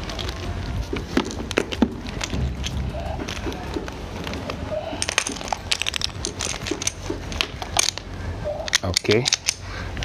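Rubber high-pressure washer hose being uncoiled and handled, with many scattered clicks and rattles from its fittings and coils knocking against each other and the concrete floor, busier in the second half.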